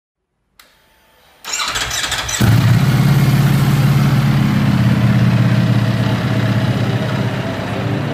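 Ducati Panigale V4's Desmosedici Stradale V4 engine being started: the starter cranks for about a second, the engine catches about two and a half seconds in, and it settles into a steady idle.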